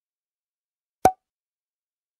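A single short, sharp pop sound effect about a second in, dying away at once.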